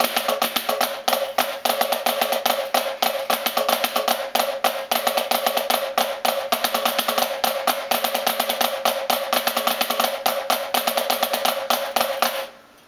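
A pair of drumsticks playing fast on a practice pad: Swiss triplets (flam, right, left) leading with each hand in turn, linked by alternating flams, in a dense, even stream of strokes with a steady ringing pitch from the pad.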